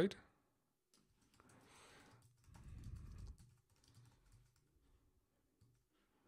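Quiet typing on a computer keyboard: a run of irregular key presses as a short line of text is typed, with a soft low murmur near the middle.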